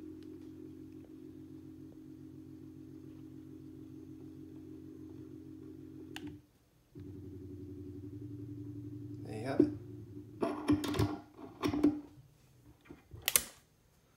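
Gear-driven stepper-motor head of an electronic expansion valve driven open at the fast 'turbo' pulse rate: a steady, pitched buzz. It stops briefly about six seconds in, then resumes until a little past nine seconds.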